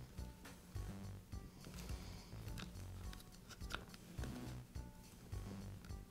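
Faint background music with a soft, steady beat, with scattered small clicks and rustles of hands handling the router's plastic motor cap and its wires.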